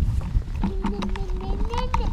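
A toddler's voice: one long drawn-out vocal sound starting about half a second in, rising in pitch near the end. It sounds over the clicking rattle and low rumble of a pushchair rolling along a rough path.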